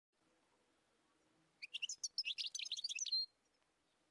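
A songbird's short song: a quick run of high chirps lasting under two seconds, ending on a brief held note.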